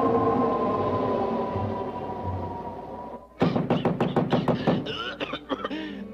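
Orchestral cartoon score: a long held chord that slowly fades away, then, after a brief break about three seconds in, a quick run of short, sharp staccato strokes.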